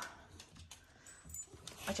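Faint, soft clicks and ticks from a miniature schnauzer mouthing a cheese-wrapped pill and spitting it out onto a mat.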